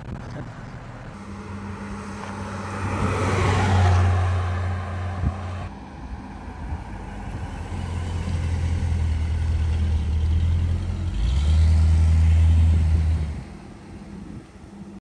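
1959 Ford Thunderbird's V8 engine running as the car drives past, heard across a few edited shots. There is a loud rush of engine and tyre noise about three to five seconds in, then the engine builds again through the second half, and the last stretch cuts off sharply near the end.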